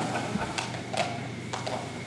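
A pause in the speech: quiet room tone with a handful of faint, sharp clicks scattered through it.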